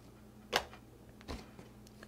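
Two light taps, about three quarters of a second apart, from hands handling a cardboard box, over a faint steady hum.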